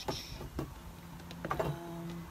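Glassware being handled on a tabletop: a short high squeak of glass near the start, then a few light knocks and clinks.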